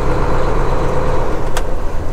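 Semi truck's diesel engine running steadily as the truck moves slowly, heard from inside the cab. A single light click comes about one and a half seconds in.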